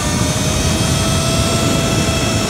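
Sur-Ron electric motorbike, running an ASI BAC4000 controller, accelerating hard: a steady high electric-motor whine over heavy wind rush and road noise on the microphone.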